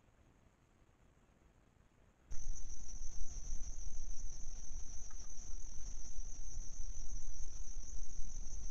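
Insects calling in a steady high-pitched drone, with a low rumble underneath; it starts abruptly about two seconds in, after near silence.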